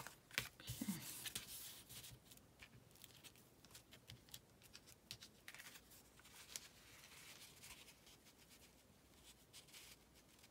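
Faint paper handling: soft rustles and light clicks as a paper photo card is handled and pressed down onto a lace-covered page by hand, busiest in the first couple of seconds.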